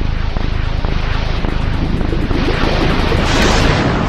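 Loud intro music built from a dense, noisy rumble that brightens into a rising whoosh near the end.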